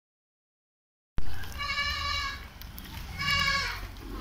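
A goat bleating twice, two high cries about a second and a half apart, over a low background rumble; the sound cuts in from silence about a second in.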